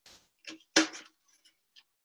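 A few short knocks and clicks of food and utensils being handled at a kitchen counter, the loudest about three-quarters of a second in, followed by faint ticks.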